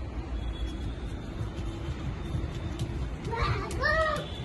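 A steady low outdoor rumble, then near the end a child's brief high-pitched call.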